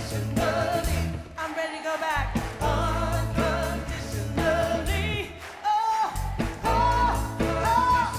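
Live soul-jazz band music: a woman singing over acoustic guitar, electric bass and drums, with a steady beat.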